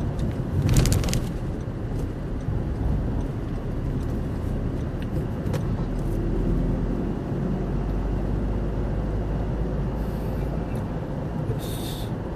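Steady low road and engine rumble inside a moving car's cabin, with a short burst of noise about a second in.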